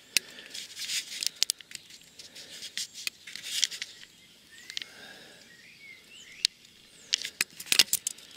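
Irregular sharp clicks and light rustling from camera handling and steps on grass, busiest near the end, with a few faint bird chirps around the middle.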